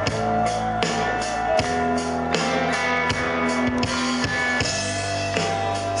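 Live rock band playing an instrumental passage, with electric guitars, bass guitar and a drum kit keeping a steady beat.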